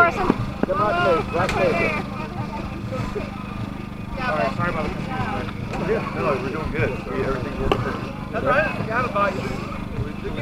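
Indistinct voices of people talking, no words clear, over a steady low hum.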